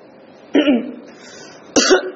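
A man coughing and clearing his throat: two short sounds about a second apart, the second one sharper.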